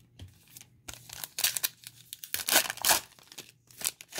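The plastic-foil wrapper of a 2019 Donruss Optic football trading-card pack being torn open and crinkled by hand, in several short rips and rustles.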